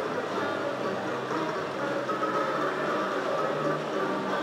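Aristocrat Double Happiness slot machine playing its win music and chiming tones as the free-games bonus win tallies into the credits, over the steady din of other machines around it.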